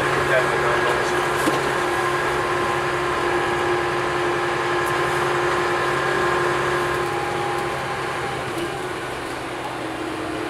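Heritage single-deck bus's diesel engine running under way, heard from inside the passenger saloon as a steady engine note. About three quarters of the way through the note shifts and eases off, getting quieter.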